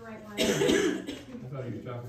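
A person coughing once, loudly, about half a second in, followed by low voices.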